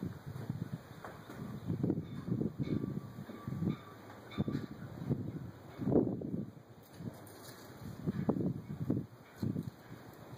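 Irregular muffled bumps and rustles, coming in uneven clusters and loudest about six seconds in.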